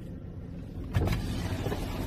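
A car's power window motor lowers the side glass, starting about a second in, over a low steady rumble from the car.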